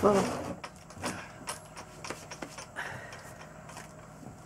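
Old weathered wooden door being pushed open, with scattered knocks and scrapes of steps and loose debris, and a brief faint creak about three seconds in. A voice trails off at the very start.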